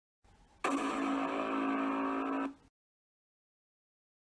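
A single steady, buzzy pitched tone with many overtones, held at an even level for about two seconds from about half a second in, then cut off suddenly.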